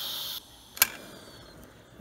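Instant Pot's steam release hissing with a steady high-pitched tone cuts off suddenly less than half a second in, the pressure spent. A single sharp click follows a moment later.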